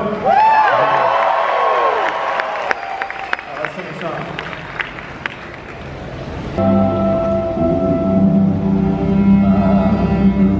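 A live concert: a man's voice through the PA and scattered applause from the audience, then about six and a half seconds in a symphony orchestra starts a slow number with long sustained chords.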